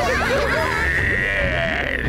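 A cartoon character's high, wavering cry, held for about a second and a half with a fast quiver and cutting off sharply at the end. Quick chattering voice sounds come just before it.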